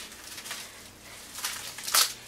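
Crinkling and rustling of a plastic mailing bag as items are pulled out of it, in scattered crackles that grow louder near the end.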